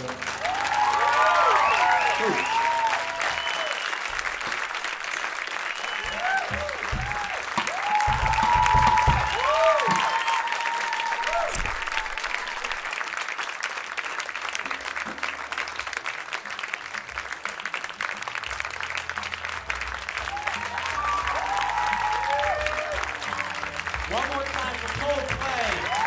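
Audience applauding through the whole stretch after an acoustic song ends, with whoops and cheers rising and falling over the clapping, strongest at the start and again in the middle.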